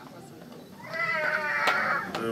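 A high-pitched voice, drawn out for about a second, starting about a second in.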